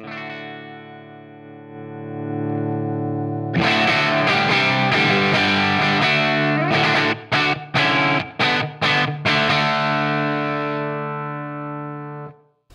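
Distorted electric guitar through a Pete Cornish-modded Hiwatt DR103 100-watt valve head with the master volume turned up high. A ringing chord swells, then a louder chord comes in about a third of the way through, followed by several short chopped stabs and a final chord left to fade. The tone is crunchy, with the amp's power section distorting.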